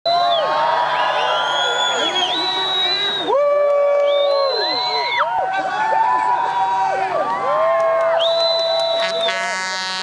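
A crowd cheering and whooping, many voices overlapping in long rising and falling calls. Near the end a buzzing tone joins in.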